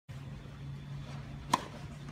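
Tennis racket striking the ball on a serve: one sharp crack about one and a half seconds in, over a steady low hum.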